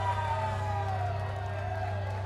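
Live band's ambient intro: a steady low drone with a single tone gliding slowly downward across it, like an electronic keyboard pad.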